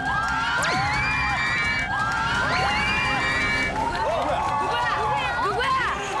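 Studio audience screaming and cheering, many high voices overlapping in long held and sliding shrieks, in excitement as a masked contestant is about to be unmasked.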